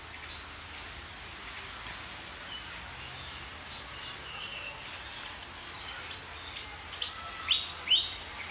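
Small birds chirping over a steady outdoor hiss, faint at first, then a quick run of short chirps, about two a second, over the last two seconds.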